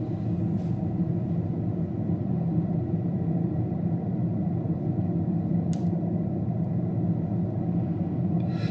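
Steady low rumble of a running car, heard inside its cabin, with one brief tick a little before six seconds in.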